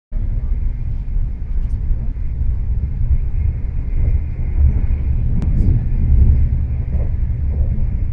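Steady low rumble of a moving vehicle heard from inside its cabin, with a single sharp click about five and a half seconds in.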